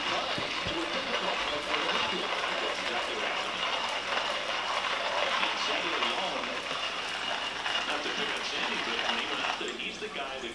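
Handheld burr coffee grinder being cranked, crunching coffee beans with a steady grainy grinding noise.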